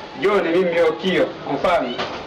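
Speech only: a person talking, the voice sweeping up and down in pitch.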